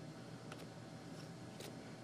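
Faint clicks of hands working open the end of a keyboard's retail box, two sharp ones about half a second and about a second and a half in, over a low steady room hum.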